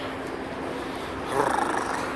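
Outdoor city background noise with a faint steady low hum. About one and a half seconds in, a brief rough, raspy noise rises and fades.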